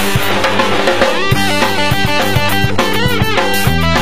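Punk rock band playing an instrumental passage: electric guitar, bass and a drum kit keeping a steady beat. From about a second in, the guitar plays short, choppy chords.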